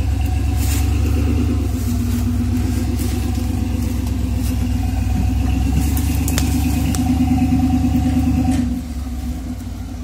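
Chevy S10 rock crawler's engine pulling under load as the truck crawls over rocks, a steady low rumble that eases off to a lighter throttle near the end.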